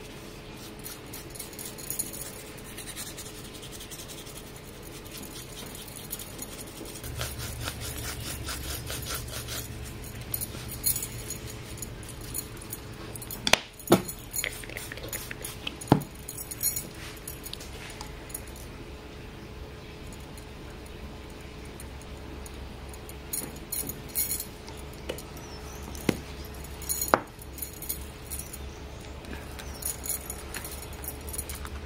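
Small clinks and taps of painting tools being handled on a tabletop, with metal bangles on a wrist clinking, and a few sharper knocks in the middle and near the end. A low hum starts about seven seconds in.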